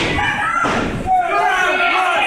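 Heavy thuds of wrestlers' bodies hitting the ring canvas in the first second, then voices shouting from the crowd from about a second in.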